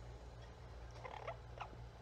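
Faint clicks and scrapes of an orange-winged amazon parrot's beak on a metal spoon and bowl as it eats oatmeal, over a low steady hum.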